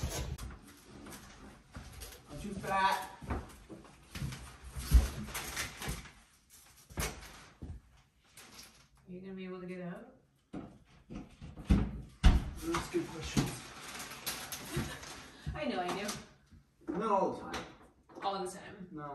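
Indistinct voices with scattered knocks and clunks from handling a newly unpacked French-door refrigerator, its doors and drawers opened and shut.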